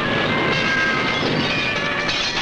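Film soundtrack: a dense, steady mechanical-sounding noise with several held high tones over it, much like a passing train.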